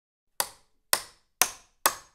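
Four sharp claps, about two a second, each dying away quickly, starting about half a second in.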